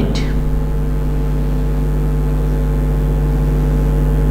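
A steady low hum with several overtones, unchanging throughout.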